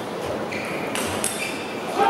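A table tennis rally: the celluloid ball clicks sharply off paddles and table a few times, with a couple of short high squeaks from sports shoes on the court floor.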